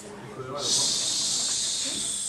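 A steady high-pitched hiss begins about half a second in and holds at an even level, louder than the voice around it.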